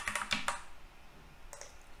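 Computer keyboard keystrokes: a few quick key presses in the first half second, then a quieter stretch with only faint clicks.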